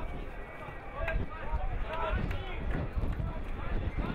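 Several short shouted calls from voices around a football pitch, over a steady low rumble.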